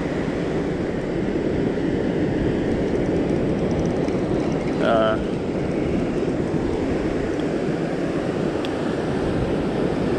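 Steady rush of ocean surf and wind.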